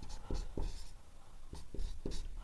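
Marker pen writing on a whiteboard, a series of short separate strokes as a word is written out.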